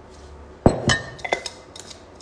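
A large ceramic mixing bowl being handled, clinking: about four short knocks with a brief ring, the first the loudest.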